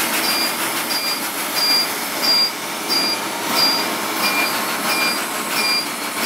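Laser hair-removal machine firing pulse after pulse, each marked by a short high beep, about one and a half beeps a second, over a steady rushing hiss of machine and air noise.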